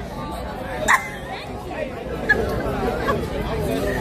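Chatter of several people talking over one another, with no single voice in front.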